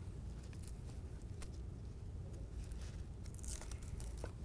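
Faint handling of a Velcro (hook-and-loop) strap being wrapped around a tube and pressed closed, with a few light clicks and brief rasps.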